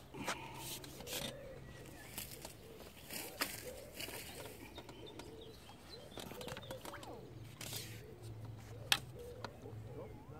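A small hooked carp splashing at the surface as it is played on a pole and drawn into a landing net: scattered light splashes and handling knocks, with one sharp click near the end.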